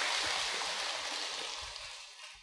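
Large audience applauding, the clapping fading gradually.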